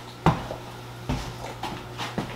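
Soft handling and movement noises from a person close to the microphone: a sharp knock about a quarter second in, a duller thump about a second in, then a few faint ticks, over a steady low hum.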